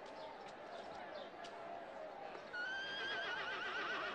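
A horse whinnying: one long call that starts about two and a half seconds in, holds a high pitch and then quavers, over a low murmur of voices.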